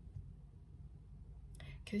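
A pause in a woman's speech, filled only by a faint low room hum; she starts speaking again near the end.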